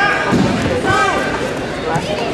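Shouting voices of coaches and spectators in a large, echoing hall, with a low thud on the mat about half a second in.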